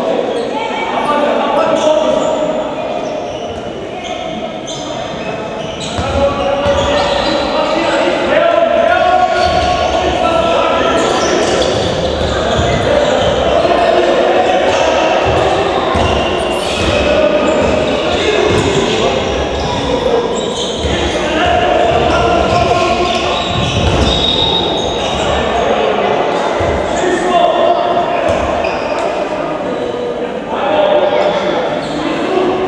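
Indoor handball game: the ball bouncing on the wooden court again and again while players and the bench call out, all echoing in a large sports hall.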